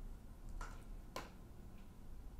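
A few faint clicks of tarot cards being handled on a table, the clearest about a second in.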